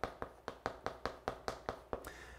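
Chalk on a chalkboard while writing Korean characters: a rapid series of sharp chalk taps, about five a second.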